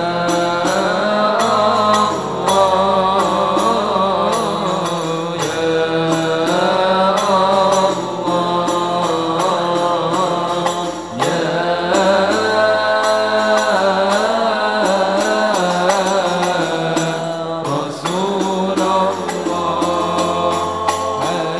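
Banjari sholawat: male voices singing an Arabic devotional chant through microphones, with a melody that pauses briefly every few seconds, over a steady rhythm of hand-played terbang frame drums.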